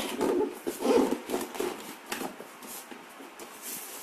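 Packaging being handled in an open cardboard box: irregular rustling and light knocks as foam inserts and a plastic sheet are lifted out, louder about a second in.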